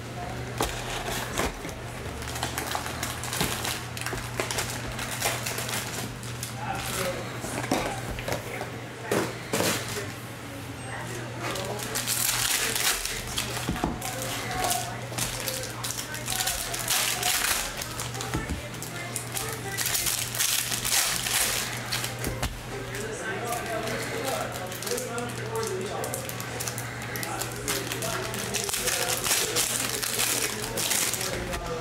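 Foil-wrapped trading card packs being torn open and crinkled by hand, with irregular crackles and clicks over a steady low hum.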